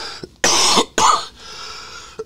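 A man coughing into his hand: two short, harsh coughs about half a second apart.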